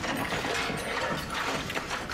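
Steady, dense rattling and clicking of a mechanism, like a ratchet or gears.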